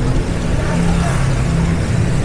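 Street traffic of motorbike and car engines running, heard as a steady low engine hum under a continuous road-noise haze.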